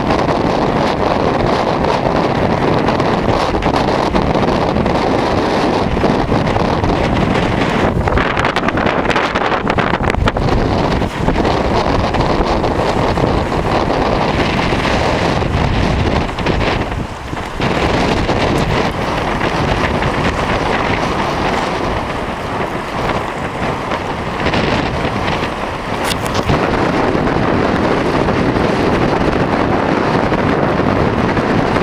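Strong wind buffeting the microphone: loud, continuous noise throughout. It eases briefly a little past the middle, then is slightly lower for a few seconds.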